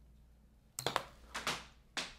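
Plastic Lego pieces clicking as they are handled at a table: a handful of short, sharp clicks in the second half.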